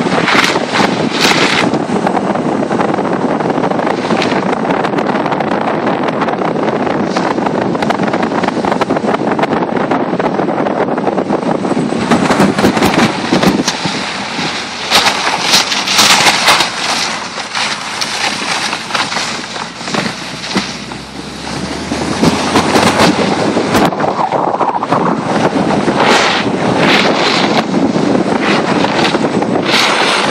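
Wind noise on the microphone over a car driving slowly on a snow-covered road, steady throughout, with louder gusts of buffeting around the middle.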